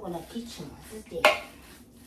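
A single sharp metallic clank from the large stainless steel mixing bowl just past halfway, as gloved hands work ground meat in it. A woman's voice is heard briefly at the start.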